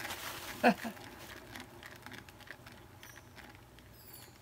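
Acrylic paint flung off a canvas spinning on a turntable, a scattered patter of small ticks. A short vocal exclamation a little before a second in is the loudest sound.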